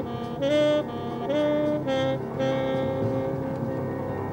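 Tenor saxophone playing a slow jazz line: several short notes of about half a second each, then one long held note from about halfway through.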